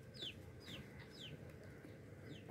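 Young chickens peeping faintly: short falling chirps, about two a second.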